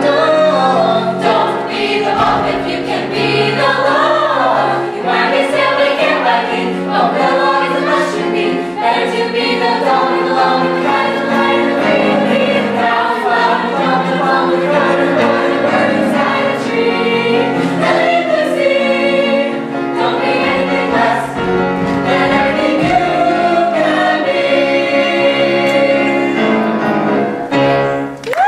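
A mixed-voice choir of boys and girls singing an upbeat song in harmony, with piano accompaniment.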